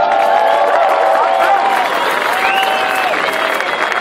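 A crowd applauding, with several long held pitched tones sounding over the clapping, a low one and a higher, whistle-like one, each lasting about a second.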